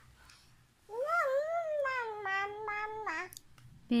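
A baby's long, high-pitched vocalizing call, starting about a second in and lasting a little over two seconds, rising slightly and then gliding slowly down in pitch with a few small breaks.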